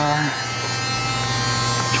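Steady electric hum with faint, fixed, higher-pitched tones above it.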